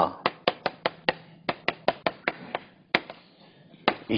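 Chalk striking and writing on a blackboard: a quick run of sharp taps, about five a second, for the first two and a half seconds, then two more single taps spaced out.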